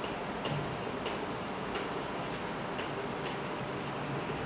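Chalk tapping and scratching on a blackboard as words are written: a few light, irregular ticks over a steady background hiss.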